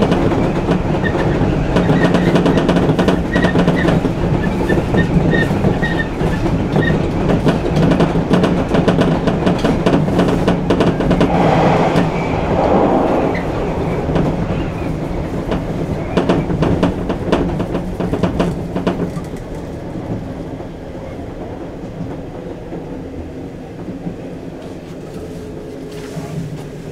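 Electric commuter train running, heard from inside the cab: wheels clicking over rail joints over a steady low hum. The sound eases off over the last several seconds as the train slows for the station stop.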